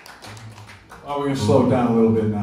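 A man's voice over the concert PA starts about a second in, loud and reverberant in the hall, over a low steady tone from the stage that begins just after the start.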